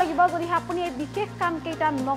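A voice speaking over background music with steady held low notes.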